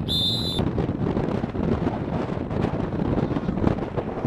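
Wind buffeting a camcorder microphone, a steady rough rumble. A brief high electronic tone sounds in the first half-second.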